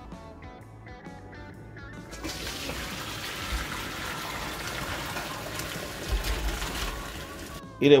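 Boiled potato slices and their hot cooking water poured from a pot into a stainless-steel colander in a sink: a steady splashing pour that starts about two seconds in and stops just before the end, as the potatoes are drained.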